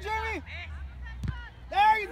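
High-pitched shouts from sideline spectators, one drawn-out call at the start and another near the end, with a single sharp knock in between.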